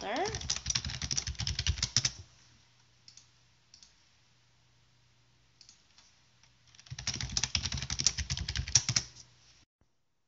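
Typing on a computer keyboard: a quick run of keystrokes for about two seconds, the first run entering a password at an administrator prompt, then a few single key clicks, then a second run of about two and a half seconds near the end.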